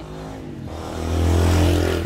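A motor vehicle's engine passing close by, growing louder to a peak in the second half and starting to fade at the end.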